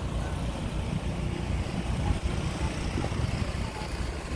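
Wind buffeting the phone's microphone outdoors, an uneven low rumble that swells and dips in gusts.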